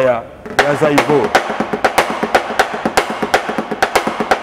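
Acoustic drum kit played solo in a quick, steady pattern of strokes on the drums, a second rhythm being demonstrated. A brief bit of voice comes as the playing begins.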